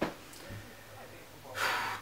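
A man's short, audible intake of breath near the end, after a pause of faint room hum.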